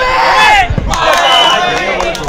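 Large crowd of spectators shouting and cheering together, in two loud waves with a short lull just under a second in.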